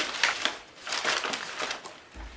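Wrapping material being handled and crumpled at a table, making an irregular rustling crackle in short bursts.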